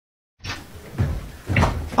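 A moment of dead silence, then a few dull thumps and knocks in a small room, about a second in and again near the end.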